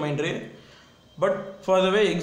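Only speech: a man narrating in Tamil, with a brief pause near the middle.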